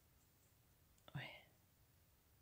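Near silence, broken just past a second in by a faint click and then a brief, soft voice sound, a whisper-like breath lasting about a quarter of a second.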